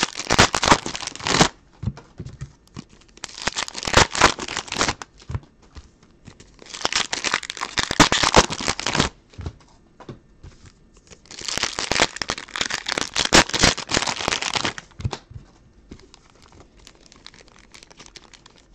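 Foil Donruss Optic football card pack wrapper crinkling in four bursts as hands work at tearing it open. It resists because the seam is facing the wrong way.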